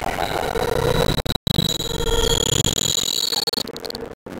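Experimental synthesizer drone: several steady high tones layered over a noisy hiss. It cuts out for a split second about a third of the way in and thins out near the end.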